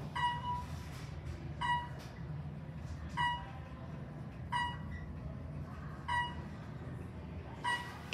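A 1974 Westinghouse traction elevator, modernized by Otis, running in its hoistway. A short electronic chime with ringing overtones sounds about every second and a half, over a steady low hum from the moving car. The chime is typical of a floor-passing tone.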